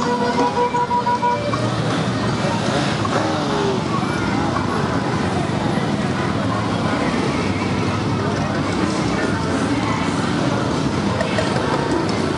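Motorcycles and cars passing slowly in a long motorcade, their engines running, mixed with voices from the riders and onlookers. A steady held pitched note sounds at first and stops about a second in.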